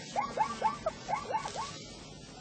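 Banded mongoose on sentry duty giving a quick run of about seven short chirping calls, each rising and falling in pitch, which stop shortly before the end.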